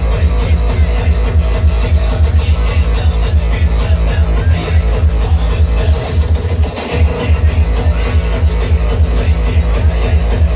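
Up-tempo hardcore dance music played loud over a festival sound system, with a fast pounding kick drum. The kick drops out briefly about seven seconds in, then comes back.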